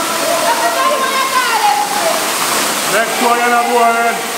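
A waterfall pouring over rocks close by, a loud steady rush of water. Voices sound over it, and near the end there is a long held vocal note.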